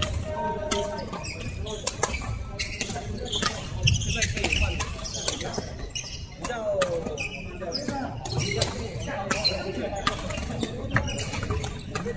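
Badminton rackets hitting a shuttlecock in a rally, a string of sharp cracks at uneven intervals, over voices and footfalls on a wooden court, echoing in a large sports hall. A brief shoe squeak comes about six and a half seconds in.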